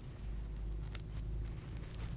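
Soft, intermittent rustling and crinkling of a small orange shirt being handled and unfolded, with a stroke about a second in and more near the end, over a steady low hum.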